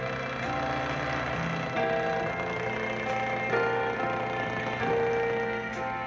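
Instrumental end-credits music from a children's TV cartoon, a melody of held notes over a bass line, played back from a VHS tape through a television's speaker.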